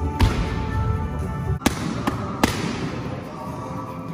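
Boxing gloves striking focus mitts in three sharp smacks, the last two closer together, over background music.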